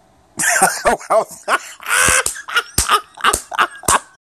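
A man laughing hard into a phone held close, in a string of breathy bursts about three a second. It starts about half a second in and cuts off sharply at the end.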